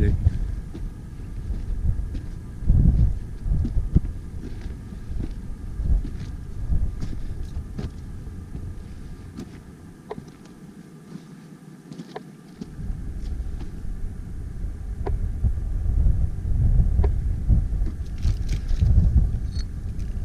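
Wind buffeting the action camera's microphone in gusts, easing for a couple of seconds midway, with faint footsteps crunching on rocky ground.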